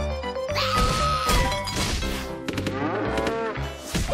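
Cartoon soundtrack: background music under a long, held, voice-like call with sliding pitch glides in the second half, and a few sudden hits.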